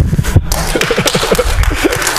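Audience laughing and clapping in response to a joke. A heavy thump comes at the very start, and dense clapping follows from about half a second in.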